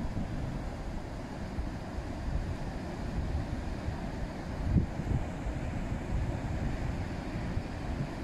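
Wind buffeting the microphone over the steady wash of surf breaking on a beach, a rumbling, gusty noise with no clear pitch.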